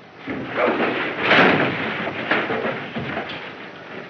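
Scuffling, thuds and crashes of a fistfight on an old film soundtrack, heaviest about a second in.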